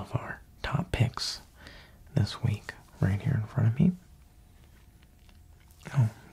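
A man's soft-spoken, half-whispered voice in two short stretches, then a pause of about two seconds near the end.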